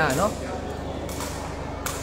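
Two sharp kicks of a sepak takraw ball, about a second in and near the end, over the steady murmur of a large crowd in a hall.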